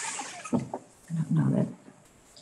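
A person's low, brief murmur or mumbled sound, with no clear words, about a second in. A short noisy burst comes at the start.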